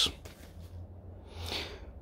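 Low steady room hum, with a man breathing in audibly near the end.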